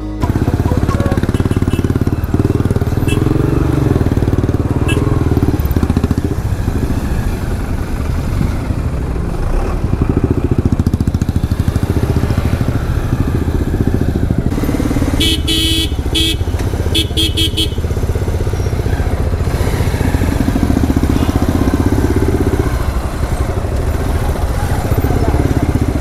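Motorcycle engine and exhaust running under way, heard close up from the rider's own bike. About fifteen seconds in, a vehicle horn sounds in several short beeps.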